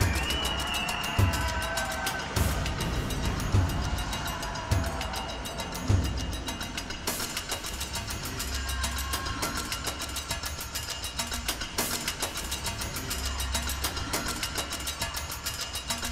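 Accompaniment music for a synchronised swimming duet routine, with heavy drum hits about once a second through the first six seconds.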